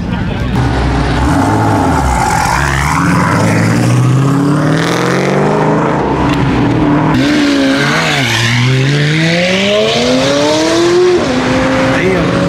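Performance car engines revving and accelerating away, their pitch rising in several pulls; the longest climbs from about seven seconds in to eleven.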